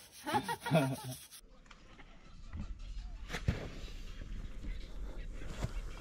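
A voice laughing or talking for about a second. Then it cuts to a low outdoor rumble with a few faint knocks.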